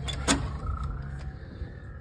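A door being opened to go inside: a latch click about a third of a second in, then a faint, drawn-out, slightly rising hinge squeak, over low rumble.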